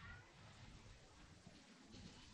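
Near silence: faint room tone, with a faint brief high-pitched sound at the very start.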